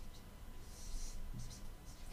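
Dry-erase marker drawing circles on a whiteboard: the felt tip gives a faint, brief squeak and rub against the board.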